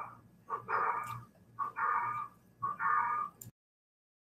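A pet animal calling three times, each call about half a second long and about a second apart. The sound then cuts off suddenly to silence.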